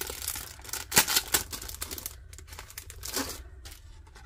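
Clear plastic packaging sleeve crinkling and crackling as a card of buttons is pulled out of it, with the loudest crackles about a second in and another flurry near three seconds.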